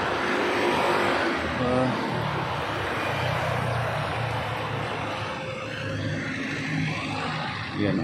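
Road traffic on a city avenue: cars passing, a steady rush that swells over the first couple of seconds and slowly eases.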